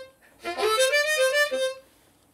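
Blues harp (diatonic harmonica) playing one short lick unaccompanied: a phrase of several stepped notes starting about half a second in and stopping shortly before the end, with no backing track behind it.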